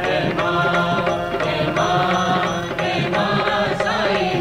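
Hindu devotional bhajan music to the goddess: a continuous melody in phrases over a steady accompaniment.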